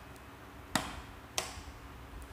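Two sharp clicks about two-thirds of a second apart, the first the louder, as an oscilloscope probe is clipped onto the trainer board's test points.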